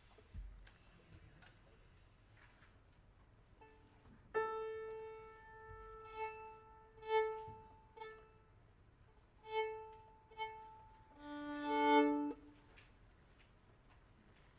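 Violin being tuned. About four seconds in, one open string, the A, is bowed in a run of held and short strokes; near the end comes a louder two-string fifth, bowed together.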